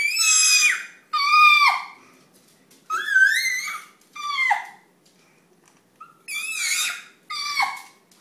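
A baby's high-pitched happy squeals: about six short shrieks, each bending up and down in pitch, with brief pauses between them.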